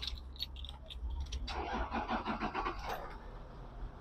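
Toyota Land Cruiser 100 Series engine being started, faint, with a stretch of even, rhythmic cranking about a second and a half in.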